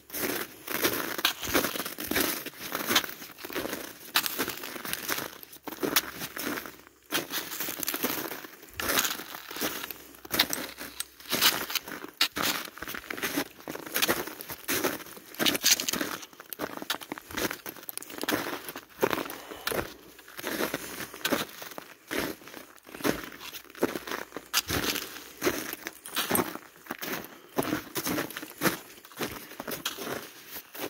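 Footsteps crunching on hard, crusty snow at a walking pace of about two steps a second.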